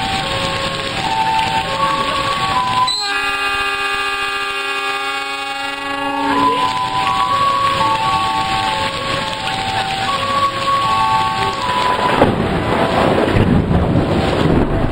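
Heavy rain falling steadily on a railway station platform and its roof. Over it plays a simple tune of stepping notes, broken about three seconds in by one long, rich, held tone lasting about three and a half seconds. The rain grows louder near the end.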